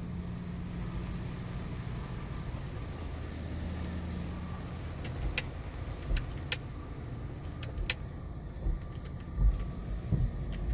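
PDQ ProTouch Tandem soft-touch car wash working over the car, heard from inside the cabin: a steady machine hum and rush of water and brushing, with a few sharp ticks around the middle as the brushes sweep the glass.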